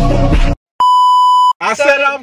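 Background music cuts off, and after a short gap a steady electronic bleep tone sounds for about two-thirds of a second and stops abruptly. A woman's voice follows near the end.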